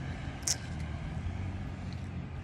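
Low, steady rumble of road traffic, with one short, sharp high-pitched click or hiss about half a second in.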